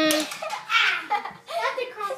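Children's voices shouting and calling out wordlessly, with a held shout at the start.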